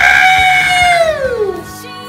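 A long, loud vocal cry, held for about a second and then sliding down in pitch before it fades out, over background music. Quieter music carries on after it.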